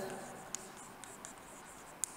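Chalk writing on a chalkboard: faint scratching with a few light ticks as the letters are stroked out.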